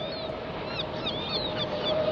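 A flock of birds calling in many short chirps over a steady low drone.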